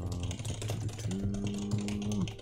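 Typing on a computer keyboard: a quick run of individual key clicks as a line of code is entered.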